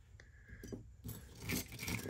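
Metal costume-jewelry brooches clinking and shuffling faintly against each other as hands rummage through a pile of them, with a few light clinks from about half a second in.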